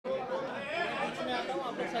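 Several people talking over one another in a crowded room: overlapping chatter.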